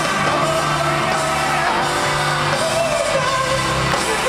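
Live pop-rock band playing loudly through an arena PA: guitars, keyboards and drums under a male lead singer's vocal.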